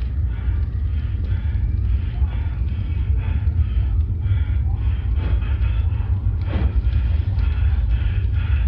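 Muffled party noise from behind a closed door: a loud, steady low rumble with indistinct voices and music above it.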